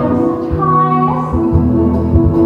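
A woman singing a musical-theatre number over orchestral accompaniment, holding long sustained notes that change pitch in steps.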